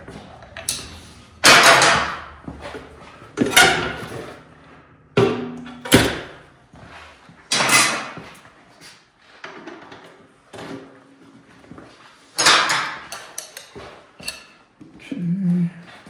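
Metal tyre irons levering a knobby dirt bike tyre's bead onto its spoked rim: several loud scraping clanks at irregular intervals, each fading with a short ring.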